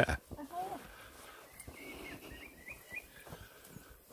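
Soft footsteps on a grassy path, with a few faint, short, high chirps around the middle.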